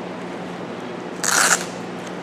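A brief scraping rustle about a second in as the AR pistol's polymer arm brace is handled, over a steady low hum.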